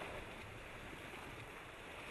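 Steady rushing noise with no distinct events.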